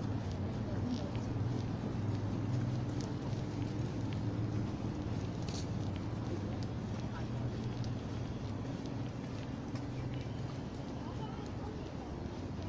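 Footsteps on a paved path, heard as scattered light clicks, over a steady low hum.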